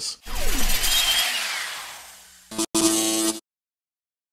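Intro logo sound effect: a noisy whoosh with a low rumble and a falling sweep, fading out over about two seconds, then a short bright pitched tone about two and a half seconds in that cuts off suddenly.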